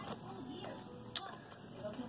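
Trading cards being handled and flipped by hand, quiet apart from a single sharp click of a card about a second in.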